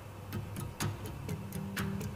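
Soft background music: low steady tones under a light, regular ticking of about four ticks a second.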